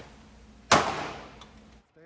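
A single pistol shot on an indoor range: one sharp crack about two-thirds of a second in, its echo dying away over most of a second.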